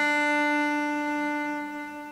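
Cello holding one long bowed note, steady and rich in overtones, that begins to fade near the end as the bow releases: the closing note of a slow traditional Scottish air.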